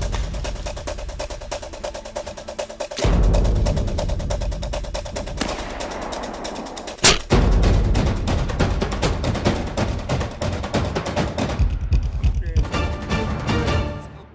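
Montage music with a fast, driving rhythm and heavy booming hits every few seconds. There is a sharp crack just before the last hit, and the music fades out at the end.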